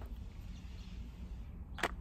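Faint low wind rumble on the microphone, with one sharp click near the end. The metal-detector pinpointer passed over the rocks gives no tone.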